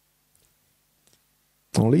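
Near silence broken by two faint, brief clicks, about three quarters of a second apart; a man starts speaking near the end.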